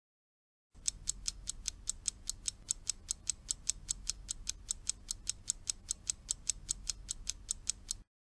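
Clock-ticking sound effect, quick even ticks at about five a second over a faint low hum. It starts under a second in and cuts off at the end, timing the pause left for learners to repeat the line just heard.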